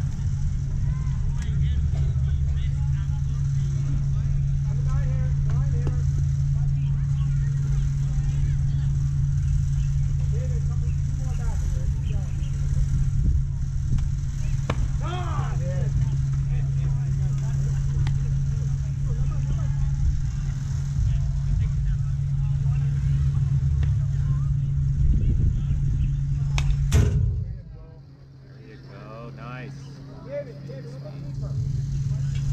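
A steady low motor hum with faint distant voices over it. The hum stops abruptly after a sharp click near the end, leaving it much quieter.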